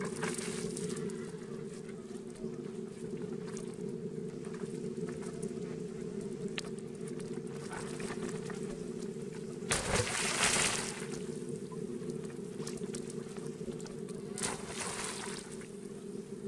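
Water splashing and sloshing as macaques swim and dive in a pool, with a louder burst of splashing about ten seconds in and a shorter one near the end, over a steady low rumble.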